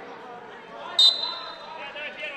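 A referee's whistle gives one short, shrill blast about a second in.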